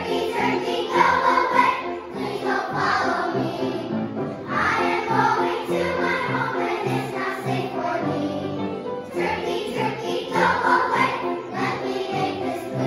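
Children's choir singing a song with instrumental accompaniment, in phrases over a steady backing.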